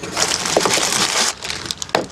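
Hands rummaging inside the wooden case of a grandfather clock and pulling out a plastic bag: a dense crinkling crackle for about a second, then a few scattered clicks and knocks.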